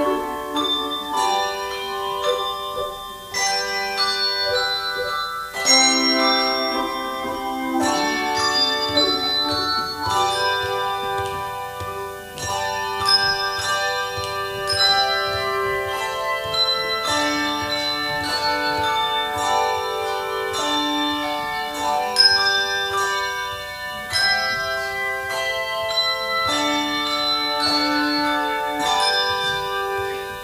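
Handbell choir playing a piece: chords of handbells struck together and left to ring on, overlapping, a new chord every second or two.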